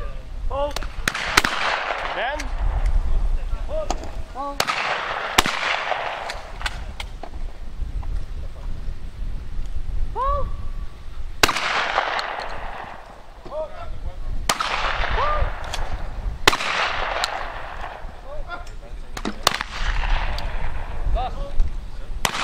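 Shotgun shots fired at clay targets on a trap line: a series of single sharp reports a few seconds apart, each trailing off in an echo, with wind rumbling on the microphone.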